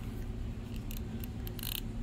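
Light handling clicks from the thin wooden birdhouse pieces and tools being moved on a tabletop, with a brief scrape about three-quarters of the way in, over a steady low hum.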